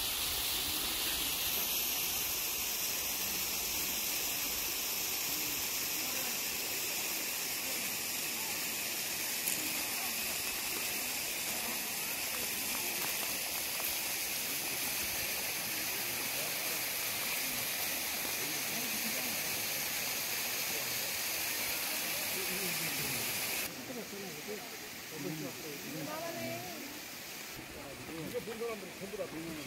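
Steady rushing hiss of water falling from a cliffside waterfall. Near the end it drops away suddenly, leaving faint voices of people.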